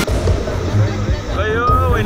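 People's voices calling out over the noise of a flooding river, rising near the end.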